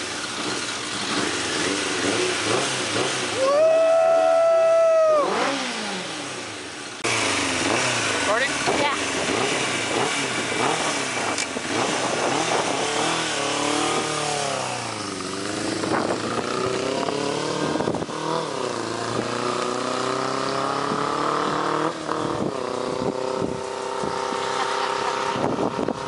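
1992 Suzuki Katana 600's inline-four engine running after years off the road with rebuilt carburettors. It is revved hard once a few seconds in, then keeps running with its pitch rising and falling as the throttle opens and closes.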